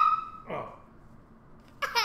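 A young child's high-pitched squealing voice, with a short falling cry, a pause of about a second, then more high squealing starting near the end.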